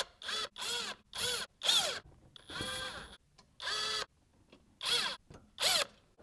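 Cordless driver driving screws into a plastic underbody splash shield in about nine short trigger pulls. Each time the motor whirs up and back down in pitch, and one longer run comes near the middle. The screws are only being started, not tightened down.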